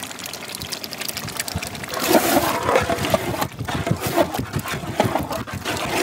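A ladle stirring curd into a thick masala in a large metal pot: wet squelching with ladle scrapes, louder from about two seconds in.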